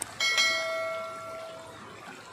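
A bell-chime 'ding' sound effect from a subscribe-button overlay, struck once just after the start and ringing out, fading away over about a second and a half.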